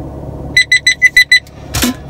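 A handheld metal-detecting pinpointer, a Nokta Makro, beeping: a quick run of six short, high, evenly spaced beeps about half a second in. A brief breathy hiss follows near the end.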